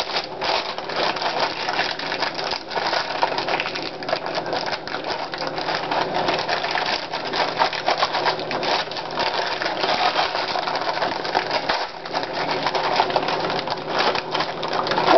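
Saltine crackers being crushed and crumbled by hand, a dense, steady crackling made of many small clicks.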